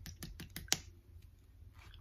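Quick light clicks and taps of fingers handling a plastic foundation bottle, about seven a second, the sharpest just under a second in, then stopping.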